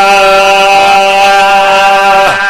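A man's voice holding one long, steady chanted note through a microphone in a sung religious recitation, breaking off into quicker vocal phrases just after.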